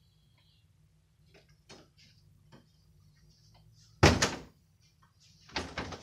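Bedroom door shut hard: a sudden loud bang about four seconds in, followed by a few quicker, quieter knocks near the end.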